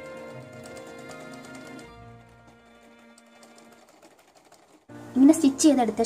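Background music with a sewing machine stitching under it, a fast even ticking, for the first two seconds. The music then fades, and a woman's voice comes in about five seconds in.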